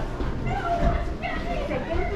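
Indistinct chatter of nearby people, with a high voice rising and falling through the middle of the stretch.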